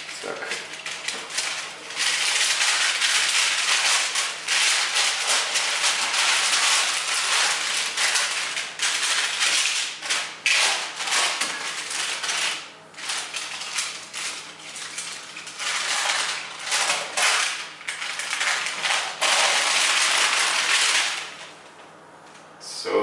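Baking paper crackling and rustling under hands as pizza dough is pressed out and spread across it, a loud, continuous crinkle with brief pauses.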